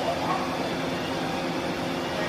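Steady low hum of the ferry Salish Orca's engines and machinery, with propeller wash churning, as the vessel pulls away from the berth.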